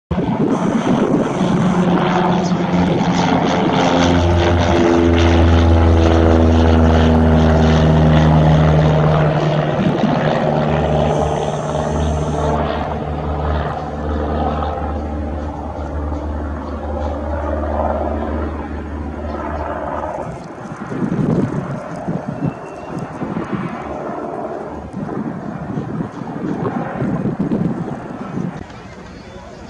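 Cessna 172M single-engine propeller plane flying past overhead. Its engine and propeller drone grows loudest a few seconds in and drops in pitch as the plane goes by, then fades as it moves away.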